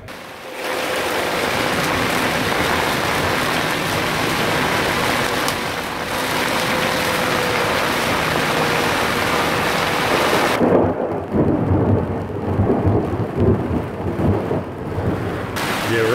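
Torrential rain pounding on a boat's cabin roof, a loud even hiss. About ten seconds in, the hiss gives way to a deep rolling rumble of thunder that lasts some five seconds.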